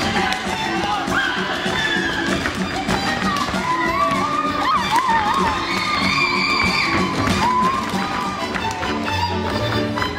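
Hungarian folk dance music playing, with voices shouting and whooping over it in the middle. A low bass line comes in near the end.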